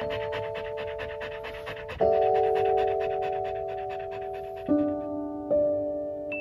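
An Australian Shepherd panting fast, several quick breaths a second, fading out after about four and a half seconds. Over it plays soft background music of held, bell-like chime notes, with new notes struck at about two seconds and twice near the end.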